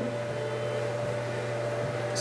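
A steady low hum with a faint, steady higher tone above it: unchanging background room noise.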